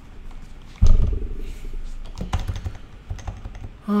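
Clicking of computer-keyboard typing, with a loud low rumble about a second in.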